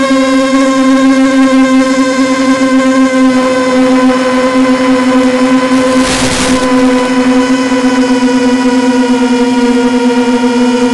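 A QAV250 quadcopter's four 2000kv brushless motors and 5-inch props in flight, heard through the analog FPV downlink as a loud, steady buzzing whine whose pitch wavers and sinks slightly. About six seconds in, a brief burst of radio static cuts across it as the video signal breaks up.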